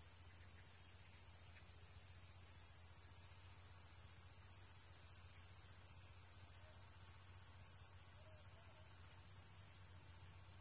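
Meadow insects such as crickets chirring: a continuous, very high-pitched, rapidly pulsing trill that swells a little in the middle.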